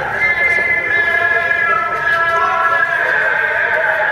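A voice chanting a melody in long held notes that waver and step between pitches.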